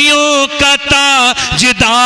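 A man singing a line of Urdu devotional verse in a drawn-out, chant-like melody, holding long notes that slide between pitches.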